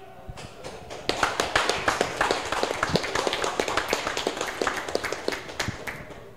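A small audience clapping. It starts about a second in and dies away near the end.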